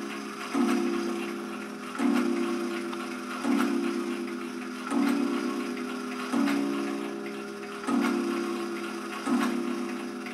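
Late-1920s Sessions Berkeley tambour mantel clock striking the hour: a very deep single-note strike about every second and a half, each ringing and fading before the next, seven strikes here, with the movement ticking underneath. The owner thinks the strike hammer is probably not adjusted correctly.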